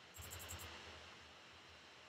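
Near silence: faint room tone, with a brief, very faint low rumble in the first second.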